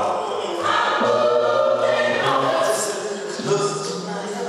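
Church choir singing, with a woman leading on a handheld microphone.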